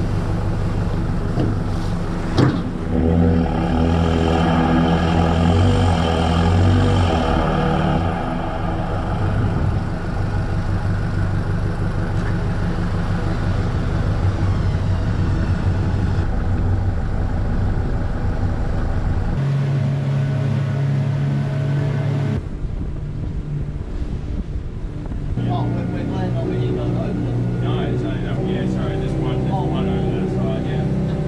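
Engines running steadily: a four-wheel drive's engine and a landing barge's engines under way, the engine note changing abruptly several times; faint indistinct voices near the end.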